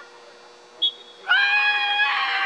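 A spectator's long, high-pitched yell, held at a steady pitch, starting a little past halfway. A brief high chirp comes just before it.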